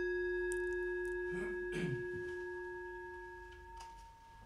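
A metal singing bowl, struck once just before this moment, rings on with several steady tones that slowly fade, marking the end of a minute of silent meditation. A brief, unclear noise comes about one and a half seconds in.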